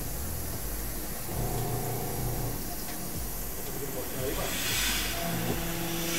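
Six-axis CNC router cutting the edge of a lens blank to shape: a steady hiss, with a low steady hum coming in about a second and a half in and again near the end.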